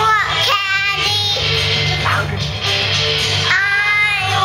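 Music: a rock/pop song with a sung voice holding long notes that glide into pitch, over guitar and a steady bass line.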